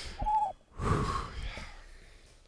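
A man's breath sounds close to the microphone: a brief high hooting vocal note, then a loud gasping breath about a second in.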